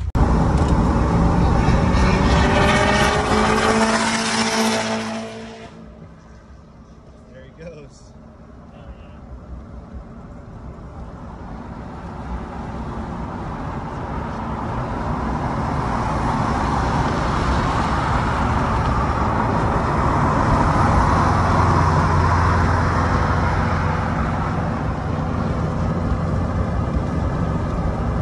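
Cabin noise of a Duramax V8 diesel pickup on the freeway: engine and road noise swell steadily as it gets up to speed, then hold at cruise. Before that, for about the first five seconds, a loud engine with a rising pitch, which cuts off abruptly.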